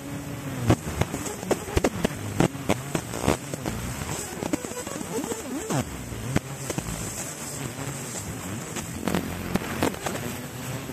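50 W fiber laser marking stainless steel, the beam crackling and popping irregularly, several sharp cracks a second, as it throws sparks off the metal surface.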